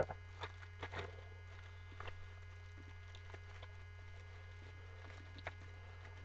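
Steady low mains hum with a few faint, scattered clicks and rustles of small items being handled.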